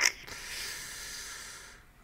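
A short mouth click, then one long breath drawn in by a man, lasting about a second and a half and fading away.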